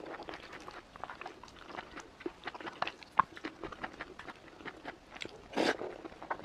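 Mouth sounds of eating a soft tomato-and-egg dish: wet chewing and lip smacks, a steady run of short clicks, with a louder slurp as a spoonful goes in near the end.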